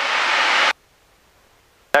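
Steady hiss of the Van's RV-6A's cockpit noise in cruise, the engine and airflow. It cuts off suddenly under a second in, leaving near silence, and comes back with a click near the end.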